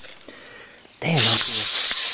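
A man's short exclamation, about a second in, that trails off into a long hissing breath, after a second of quiet with faint handling clicks.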